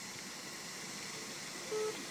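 Faint steady background hiss, then near the end an electronic beep begins: the first of a string of short, evenly spaced beeps at one pitch.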